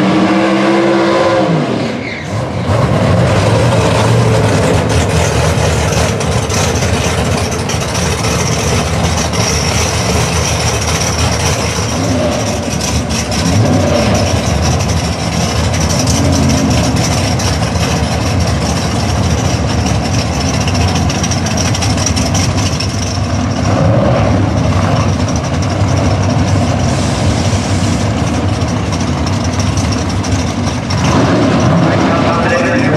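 Top Sportsman drag-race car engines. In the first two seconds a burnout ends with the revs falling off, and then the engines run at a loud, rough idle as the cars get ready to stage.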